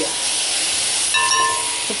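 Grated carrot and onion frying in oil in a pan and being stirred with a spoon: a steady sizzle. A short high squeak cuts in a little over a second in.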